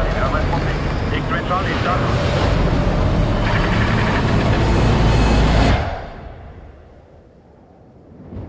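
Loud, heavy rumble of a rocket plane's engine heard inside the cockpit. About six seconds in it drops away sharply and fades to a quiet hush.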